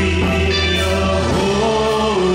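Church choir singing a gospel worship song in long held notes over a steady low accompaniment, the melody stepping to a new pitch about halfway through.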